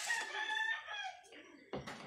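A rooster crowing once, one long call of about a second that drops in pitch at its end. A short sharp knock follows near the end.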